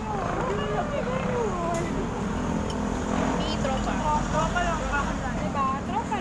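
Women's voices talking and laughing together at a table, over a steady low rumble.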